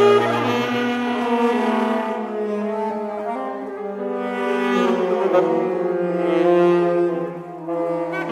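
Saxophone quartet of soprano, alto, tenor and baritone saxophones playing sustained, shifting chords. A low baritone note drops out about half a second in, and the ensemble briefly softens just before the end.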